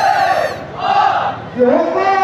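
Group of male Bihu performers shouting together in a cry over dhol drumming, the shouts rising and falling in two swells. Near the end a held, steady pipe note starts up.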